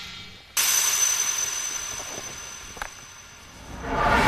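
Edited-in TV sound effect: a bright shimmering hiss with a steady high ringing tone starts suddenly about half a second in and fades away over about three seconds. Near the end a rising whoosh sweeps into the next shot.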